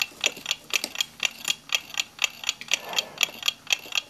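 A mechanical clock ticking steadily, about four ticks a second.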